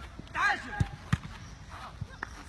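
A short shout, then two sharp thuds of a football being struck, about a third of a second apart.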